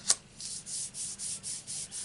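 Fingertips rubbing white cardstock down onto an inked rubber background stamp to transfer the image. A light tap comes first, then even hissing strokes of paper rubbing at about three a second.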